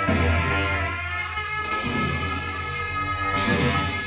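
Tibetan monastic ritual music accompanying a cham dance: a steady low horn drone under held, reedy horn tones, with a crash of cymbals twice, about every second and a half.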